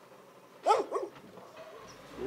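A dog barking twice, two short barks about a quarter-second apart, under a second in.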